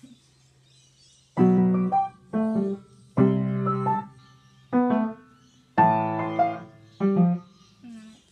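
Yamaha piano played in short, separated phrases: after about a second and a half of quiet, six groups of chords and single notes, each sounding and dying away before a brief gap and the next.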